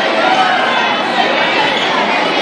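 Crowd in a packed school gymnasium chattering steadily: many overlapping voices with a hall's echo, and no single voice standing out.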